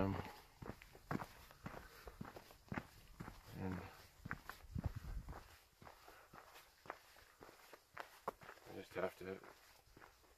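Footsteps of a hiker walking on a dirt forest trail: soft, irregular scuffs and crunches underfoot with light rustle of the pack and gear.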